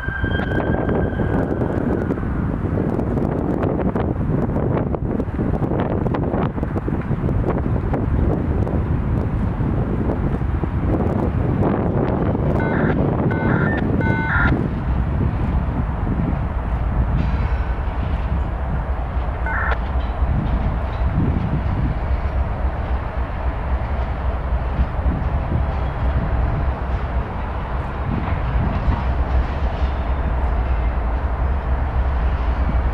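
CSX diesel freight locomotives moving at a crawl, their engines giving a steady low rumble.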